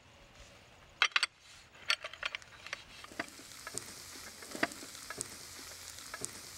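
A few sharp clinks of dishes about a second in, then from about three seconds a steady sizzle with small pops: a pan of paella rice cooking over a wood fire as the vegetable stock is absorbed.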